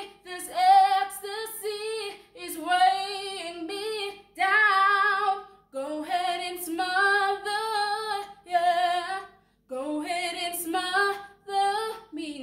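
A woman singing unaccompanied, in held phrases with vibrato, each a second or two long with short breaths between them.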